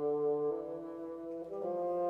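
Bassoon playing a slow melodic line in concert: a sustained low note, then a new note about half a second in and another about a second and a half in.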